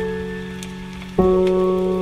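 Slow, soft piano music over a steady low sustained tone: a chord fading away, then a new chord struck a little over a second in. A faint patter like rain runs underneath.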